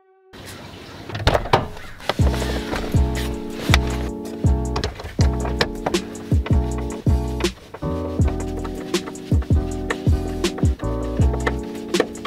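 Background music with a steady beat over held chords, starting after a brief silence.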